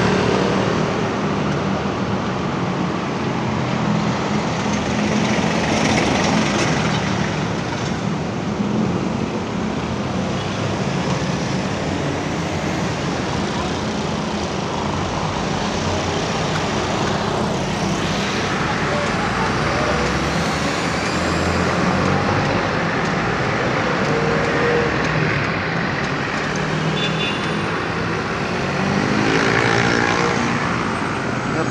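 Busy city intersection traffic: motorcycles, cars and a truck passing close by, with a steady mix of engine hum and tyre noise.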